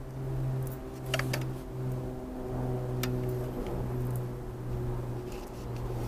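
A steady low hum runs throughout, with a few light clicks about a second in and near three seconds as small succulent cuttings are pressed into a plastic nursery pot of soil.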